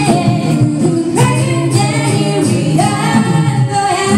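A five-voice a cappella group singing live into microphones: a high melody line over sustained backing harmonies, with vocal percussion keeping a steady beat, all voices and no instruments.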